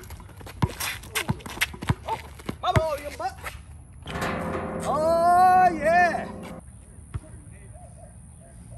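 Basketball dribbled on an outdoor concrete court: a string of sharp bounces over the first three seconds or so. About four seconds in comes a long drawn-out shout with rising pitch that lasts two to three seconds.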